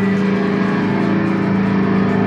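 Loud, sustained droning chord from amplified rock instruments, held at a steady pitch.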